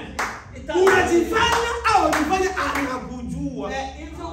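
Hand claps, several irregular claps in the first three seconds, heard over a man's voice.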